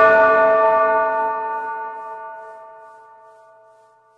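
Closing chord of the outro jingle music: several steady tones struck together and left to ring, fading out over about three seconds.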